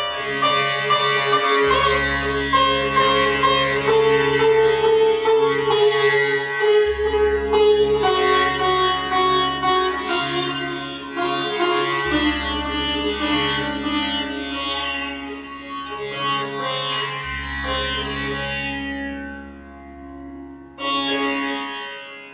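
Sitar playing a slow solo melody of plucked and sliding notes over a steady drone, with a fresh strong stroke near the end.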